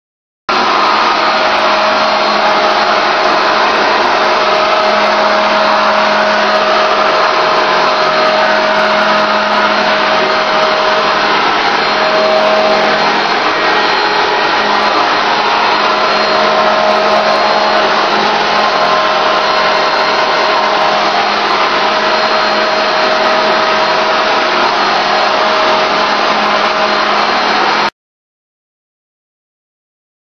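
Paint spray rig blowing air and hissing steadily as a red-tinted UV clear coat is sprayed onto a bathtub, with a steady whine running through the noise. It cuts in suddenly about half a second in.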